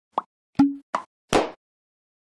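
Four short popping sound effects, roughly 0.4 s apart, with dead silence between them; the second pop trails a brief low hum.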